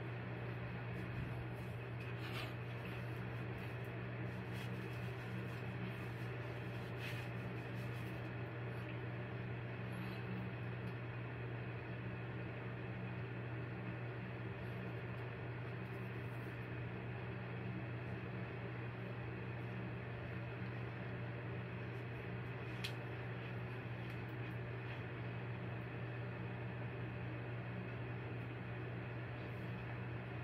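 A steady mechanical hum with a low droning tone and a hiss over it, unchanging throughout, with a few faint clicks.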